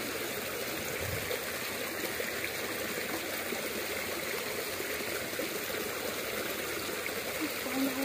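Steady flowing of stream water, an even rushing with no breaks.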